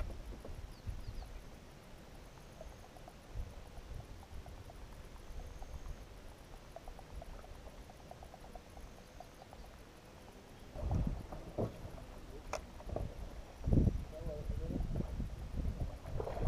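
Low rumble of wind on the microphone over calm river water, with two louder dull knocks about three seconds apart near the end and a single sharp click between them.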